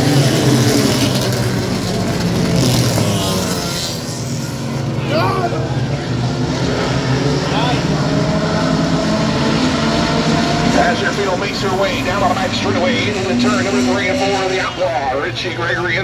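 A field of small stock cars lapping the oval at pace speed, many engines running together in a steady sound, with indistinct voices over it.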